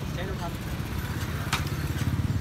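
Motorcycle engine running at low revs, a steady pulsing rumble, with faint voices and one sharp click about one and a half seconds in.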